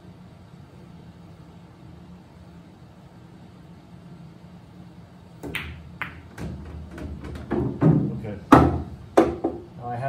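Pool break shot in straight pool: a little after five seconds in, the cue strikes the cue ball and it drives into the rack, followed by a run of sharp clacks as the balls scatter against each other and the cushions, the loudest near the end. Before the shot only a low room hum.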